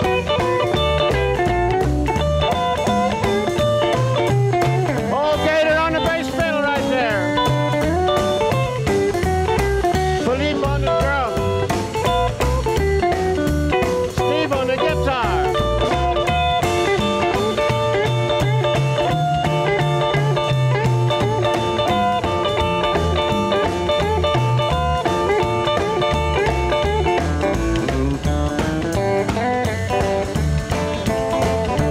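Instrumental break of a rockabilly band: an electric guitar plays lead with bent notes over strummed acoustic rhythm guitar, upright bass and drums, in a steady beat.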